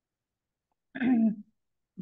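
The first second is silent, then a person makes one short vocal sound, about half a second long.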